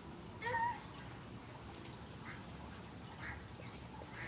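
A short, wavering animal call about half a second in, followed by a few fainter calls.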